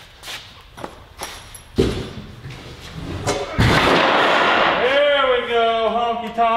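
A heavy wooden stair section thrown down onto a concrete floor: a thud about two seconds in, then a louder crash about a second and a half later with roughly a second of clatter. A man's drawn-out shout follows near the end.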